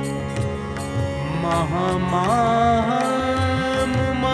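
Shabad kirtan music between sung lines: a harmonium holds steady chords under regular light percussion strokes. About a second and a half in, a gliding, wavering melody line comes in over it.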